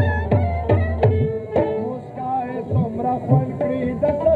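Pashto folk music with tabla drumming, the bass drum's strokes bending in pitch, under a sustained, wavering melody line.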